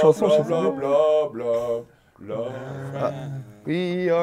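A man singing a tune on one repeated nonsense syllable, "bla", in held, steady notes, with a brief break about two seconds in.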